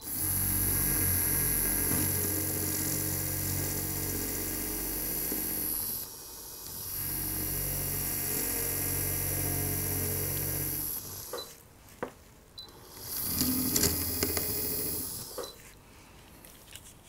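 Surgical implant motor spinning a contra-angle handpiece with a twist drill down into the jaw bone, preparing the bed for a dental implant: a steady motor whine that dips briefly about six seconds in and stops about eleven seconds in, followed by a few light clicks and another shorter run near the end.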